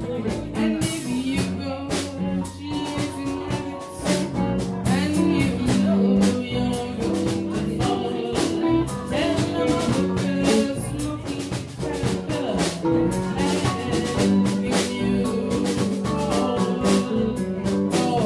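A live band playing a song, with electric bass, electric guitar and drum kit keeping a steady beat, and a woman singing over them.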